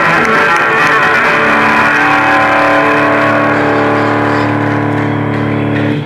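Live rock band with electric guitars and drums ending a song on a long held chord. The chord rings for about four seconds, then stops sharply.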